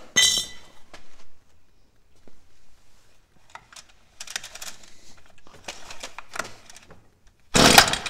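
Recoil starter rope of a Stihl FS45C two-stroke string trimmer pulled several times, cranking the engine over for a spark test without it starting. The pulls come as rough bursts, and the last one, near the end, is the loudest.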